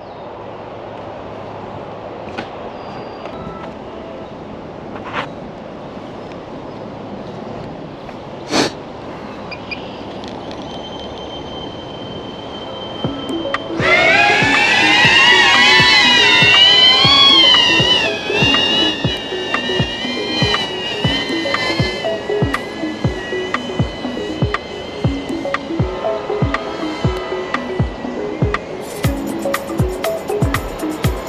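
DJI Avata cinewhoop drone's propellers spinning up a little under halfway through, a loud, wavering whine that rises in pitch at the start and carries on more quietly as the drone flies. From then on, music with a steady beat plays under it. Before that, only a steady outdoor hiss with a few clicks.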